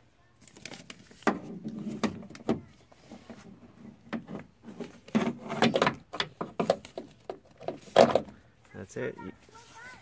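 Metal door check arm being fed through the opening in a car door, clicking, scraping and knocking against the door's sheet metal in an irregular series. The loudest knock comes about eight seconds in.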